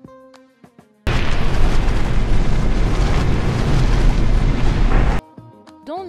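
Loud explosion-like sound effect in an edited segment transition: a dense noise, heavy in the bass, that starts suddenly about a second in and stops sharply some four seconds later. Light music with plucked notes plays before and after it, and a rising whistle-like glide comes right at the end.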